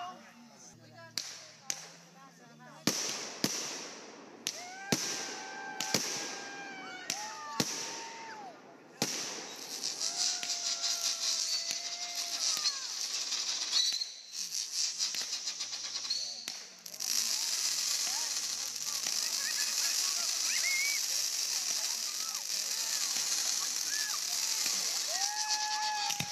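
Fireworks going off: a run of sharp bangs over the first nine seconds, then a dense, continuous crackling to the end as the effects burst.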